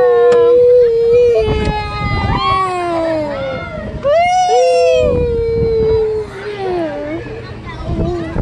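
Young children's long, drawn-out wordless cries while riding a spinning ride: about three, each held for a second or two and sliding down in pitch at the end, with a second voice overlapping the first. A low rumble runs underneath.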